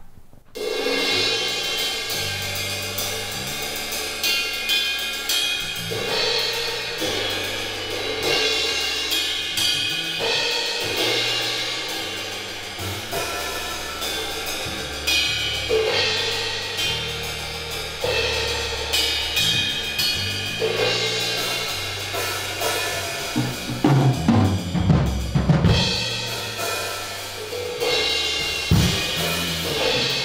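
A live jazz band starts playing about half a second in: keyboard with a drum kit keeping cymbals and hi-hat going over slowly changing low notes, in a spacey opening. Heavier low drum hits come in about two-thirds of the way through.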